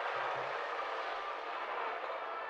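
A steady rushing noise, a sound effect from the anime episode's soundtrack, starting suddenly just before and holding level, with faint tones running through it.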